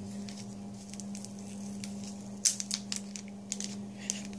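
Small plastic bags of nail glitter being handled, giving light crinkles and clicks, with a sharper click about two and a half seconds in. A steady low hum runs underneath.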